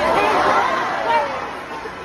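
A concert crowd screaming and cheering, many voices at once, loud at first and dying down.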